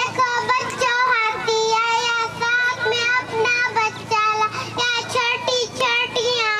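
A young girl singing a children's poem into a microphone in a high, sing-song voice, holding each note briefly in short phrases.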